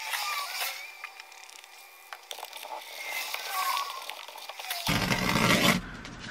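Microfibre towel rubbing and scraping over a vinyl car seat during cleaning. The sound is thin, with no low end, until about five seconds in, when it fills out.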